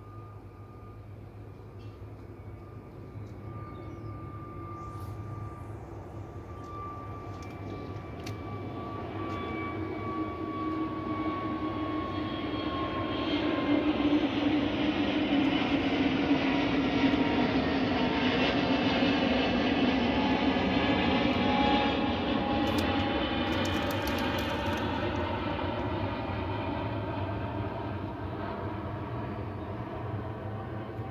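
An aircraft passing over: its engine noise swells slowly, is loudest for several seconds midway, then fades, with a whine that falls steadily in pitch as it goes by.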